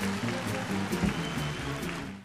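Small-group cool jazz: a baritone saxophone line over double bass and drums, with a steady run of short notes and regular cymbal strikes.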